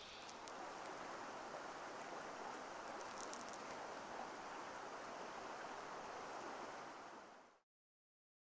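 Small shallow creek flowing: a faint, steady wash of water that fades out near the end.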